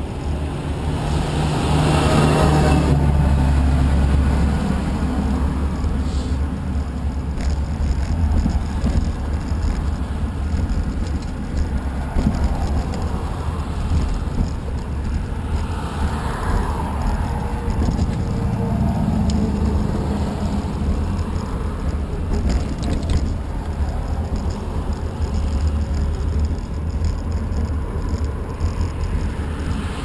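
Cars passing on the road alongside, one louder pass about two seconds in and another around the middle, over a steady low rumble of wind on the microphone of a moving action camera.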